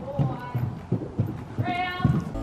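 Horse's hooves on an arena's sand footing, a steady series of dull thuds at a walk, about three a second.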